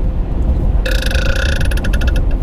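A man burps loudly about a second in, a rapidly pulsing burp lasting over a second, over the steady road and engine rumble inside a pickup truck's cab.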